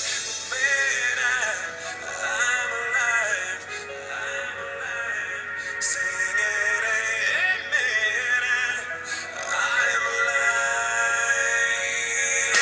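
A song playing: a sung vocal melody over instrumental backing.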